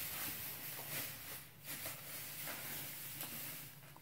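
Faint rustling of dry hay being gathered by hand into a bundle, coming and going in soft waves.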